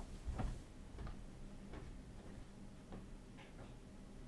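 A light knock just after the start, then faint clicks at irregular intervals of about a second, over a low steady hum.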